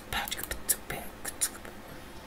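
A man whispering: short hissy breaths and sharp mouth clicks through the first second and a half, then only quiet room noise.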